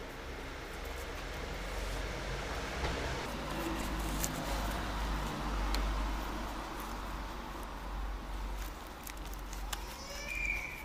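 Street background with a steady low rumble, overlaid by a few small sharp clicks and rustles as the plastic holder of a folding bike lock is strapped to a bicycle frame with hook-and-loop straps.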